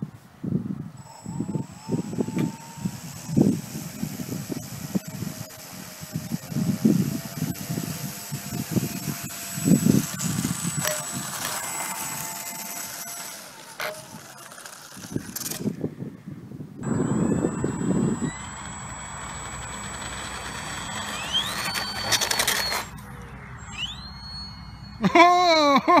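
Small RC model warbird's propeller motor running as the plane taxis on asphalt, with irregular low thumps and wind on the microphone. Later a steadier motor tone rises in pitch about 21 seconds in.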